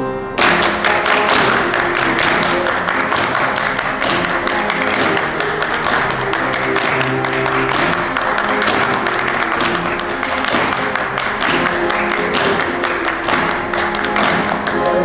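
Many hands clapping fast, starting suddenly about half a second in, over steady instrumental accompaniment from a musical number.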